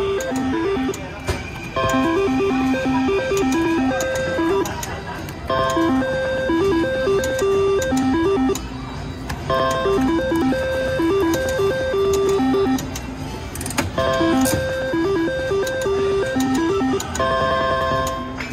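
IGT Double Gold reel slot machine playing its electronic spin tune, a run of short beeping tones, while the reels spin. The tune repeats about five times with a short pause between spins.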